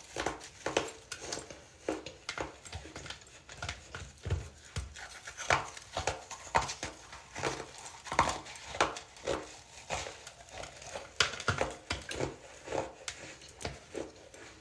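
Chunks of hardened baking soda crunching as they are bitten: irregular sharp crunches, about two a second.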